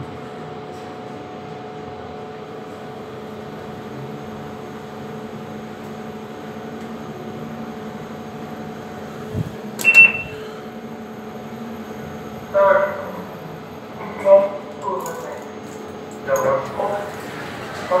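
Steady hum inside a Kone EcoDisc lift car as it travels between floors. About ten seconds in comes a sharp click with a short high beep as a car call button is pressed.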